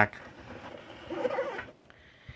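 Scraping and rubbing, lasting about a second and a half, as a 1:24 diecast pickup truck is slid and turned around on its display base.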